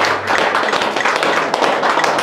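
Audience applauding with a dense patter of hand claps as a live song ends.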